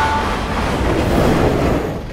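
Passenger train moving past a station platform, heard from inside the coach: a steady running noise of wheels on the rails.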